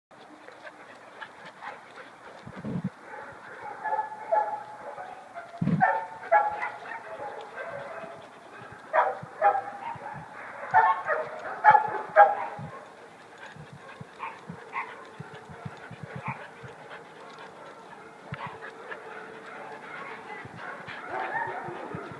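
A dog barking in repeated short bouts, the loudest run about nine to twelve seconds in, with quieter, sparser barks later. Two low thumps come a few seconds in.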